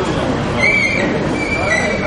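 Indoor crowd murmur in a busy hall, with a thin, high, steady squealing tone coming in about half a second in and holding to the end.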